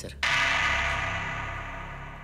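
A loud metallic clang from a gym machine's stacked weight plates, ringing on and fading slowly over more than a second.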